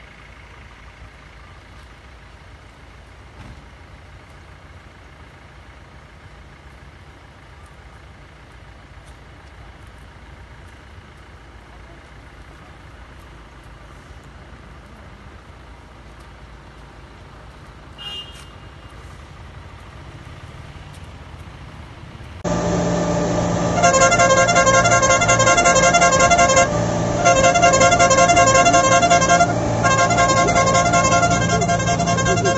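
Faint steady background noise, then about 22 seconds in a sudden loud, sustained blaring of several steady pitched tones with a pulsing pattern, cutting out briefly twice.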